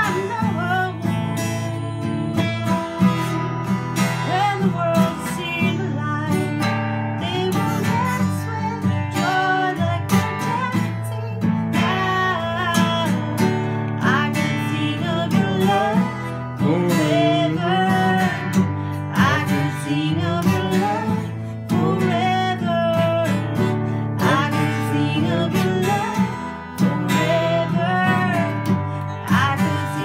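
A woman singing while strumming chords on an acoustic guitar.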